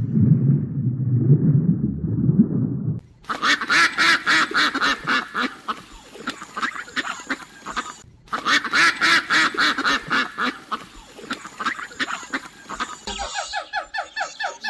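A flock of mallard ducks quacking, many quacks overlapping in a rapid chatter, starting about three seconds in and running to near the end with a brief break in the middle. Before it there is a low rumble, and near the end it gives way to high, evenly repeated squeaky calls.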